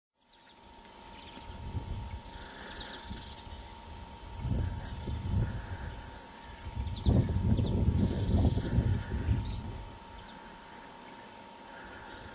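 Small birds chirping now and then over a low, uneven rumble that swells strongest from about seven to nine seconds in, with a faint steady hum underneath.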